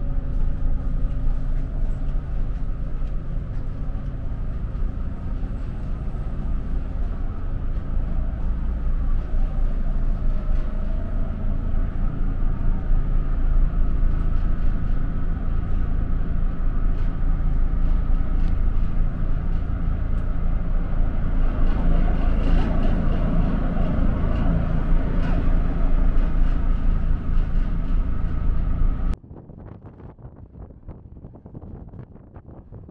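Steady low drone of a car ferry's engines and machinery heard inside the passenger deck, with a layered low hum. It cuts off abruptly about a second before the end.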